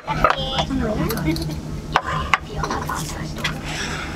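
Plates and cutlery clinking on a restaurant table, with a couple of sharp clicks, over a steady low hum and background voices.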